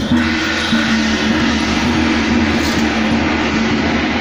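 Loud, continuous din of a street temple procession: a dense, unbroken wash of noise over a steady low hum.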